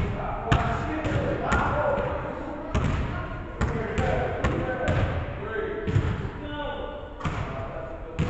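A basketball bouncing on a hardwood gym floor, about eight thuds at uneven intervals, each hanging on briefly in the large hall.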